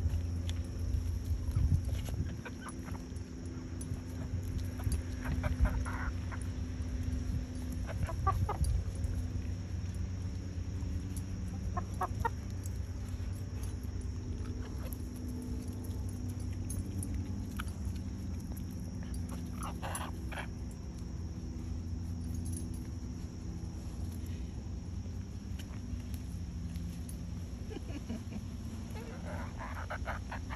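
Hens clucking now and then while they feed, in short scattered calls a few seconds apart.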